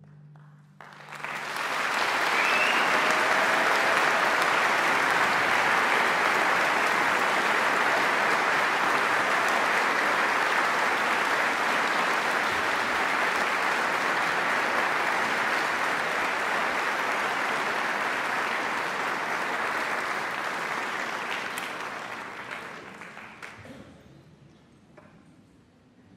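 Audience applauding, rising quickly about a second in, holding steady, then fading away near the end.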